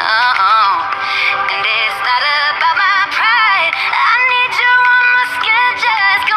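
A pop song playing: a high lead vocal sung with vibrato over the music.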